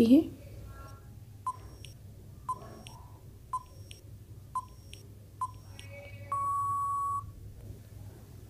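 Countdown timer sound effect: five short beeps about a second apart, then one longer beep lasting nearly a second, marking the end of the time to answer.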